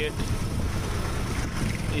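Auto-rickshaw engine running with a steady low rumble and road noise, heard from inside the moving auto-rickshaw.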